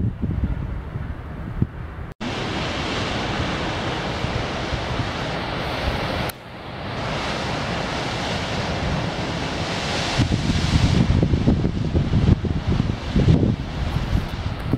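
Ocean surf washing around shoreline rocks, a steady rush of water, with wind buffeting the microphone in gusts from about ten seconds in.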